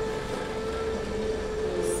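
A steady hum, one pitch held with fainter overtones, over a constant background hiss, with no other event.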